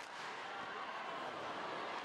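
Steady background noise of an ice hockey arena during play, a continuous crowd murmur and rink noise.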